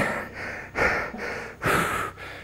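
A man breathing hard from exertion during a set of barbell good mornings: three heavy breaths, the last and loudest near the end.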